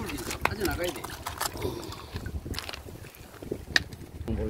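River stones knocking and clicking together in a shallow stony riverbed while they are handled in the water, with sharp irregular clicks over low sloshing and rumble.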